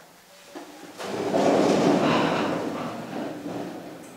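A roomful of people pushing back wooden chairs and getting to their feet together. The noisy shuffle and scrape starts about a second in, swells, then fades.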